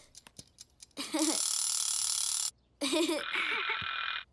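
Chick-shaped wind-up egg timer ticking faintly, then its bell ringing for about a second and a half before stopping suddenly. After a short gap a phone game plays the ring back, tinnier and narrower.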